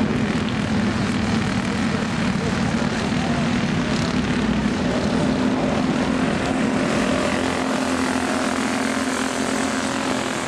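Several dirt-track racing go-kart engines running together as the karts race around the track, a steady drone.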